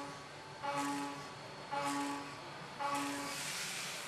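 A Haas VF-3 Super Speed CNC mill is rough-milling aluminum with a roughing end mill working round the part's perimeter. A steady pitched cutting tone comes in for about half a second at a time, roughly once a second, each time at the same pitch. Under it runs a hiss of coolant spray and chips that grows louder near the end.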